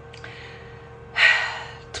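A woman draws one short, audible breath just over a second in, over quiet room tone with a faint steady hum.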